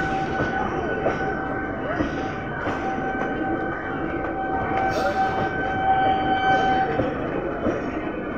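ICF-built electric local train (EMU) rolling past close by, its coaches running over the track in a steady loud rumble. A thin steady high tone is held through most of it and fades near the end.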